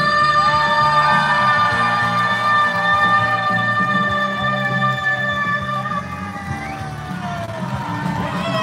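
A woman singing a pop song into a microphone through a PA system over a backing track, with long held notes.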